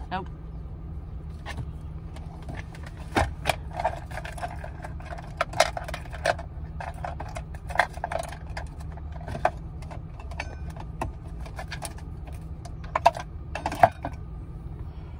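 A vehicle's engine idling steadily in the cabin, with scattered sharp clicks and knocks from things moving or being handled inside the van.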